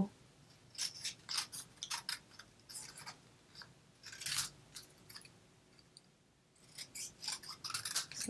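Small craft scissors snipping through a paper strip in a run of short, irregular cuts, with a pause of about two seconds past the middle before the snipping resumes.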